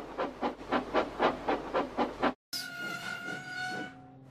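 Steam locomotive chuffing, a quick even run of about six puffs a second, which cuts off after about two seconds. After a short gap, a steady high tone with lower tones under it follows.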